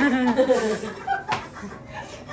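Laughter and chuckling, loudest in the first half second and then dying down, with a short sharp click about halfway through.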